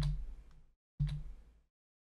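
Two sharp clicks from the computer controls, about a second apart. Each is followed by a short low hum that fades out.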